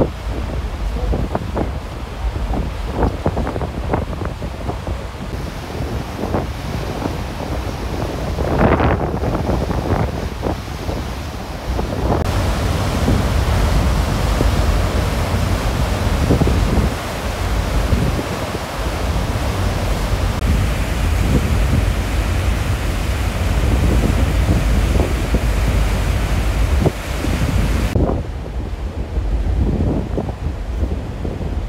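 Strong wind buffeting the microphone over the rush of sea water alongside a moving ferry. The mix changes abruptly a few times, as between shots, with the water rush fuller through the middle stretch.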